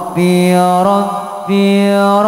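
Male voices chanting an Arabic shalawat, a blessing on the Prophet, in long held notes with a fresh phrase starting about every half to three-quarters of a second.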